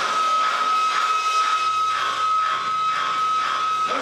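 Rock band playing live: a single high tone is held steadily over a beat of about two strokes a second, and a low bass note comes in about halfway through.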